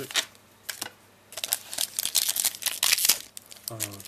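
Foil wrapper of a Pokémon Neo Destiny booster pack crinkling and crackling as it is handled and torn open by hand, with a brief lull about a second in before a dense run of crackles.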